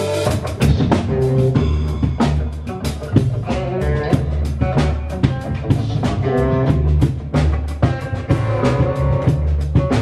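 Live blues-rock band playing an instrumental passage: a Gretsch hollow-body electric guitar, an upright double bass and a drum kit keeping a steady beat.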